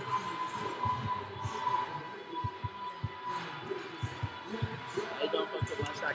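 Basketballs bouncing on a hardwood gym floor: short, irregular low thuds every half second or so, over indistinct chatter and a faint steady tone.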